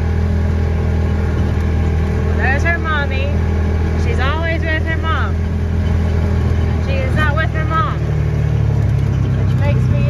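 Vehicle engine running steadily, a low drone heard from inside the closed cab as it drives across a pasture.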